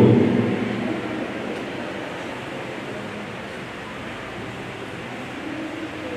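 Steady, even hiss of room noise in a pause between spoken sentences, with the tail of a man's voice dying away in the first second.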